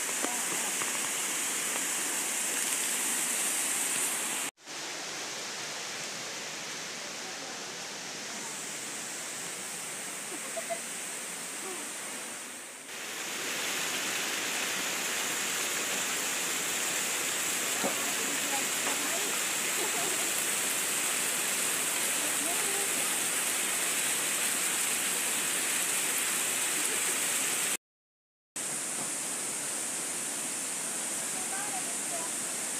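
Steady rushing of a waterfall and river, with faint voices under it. The sound breaks off briefly twice at cuts: a short dip a few seconds in and half a second of silence near the end.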